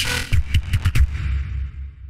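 Live-looped beatbox routine on a loop station coming to its end: a few last beat hits over bass, then the music dies away in a fading tail of reverb and low bass.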